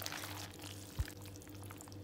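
Soft wet, sticky sounds of sauce-coated linguine being tossed with a wooden spoon in a glass bowl, with one low thump about halfway through and a faint steady hum underneath.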